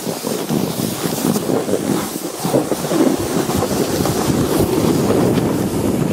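Snowboard sliding and scraping over snow, a steady rough rumble that grows louder about halfway through.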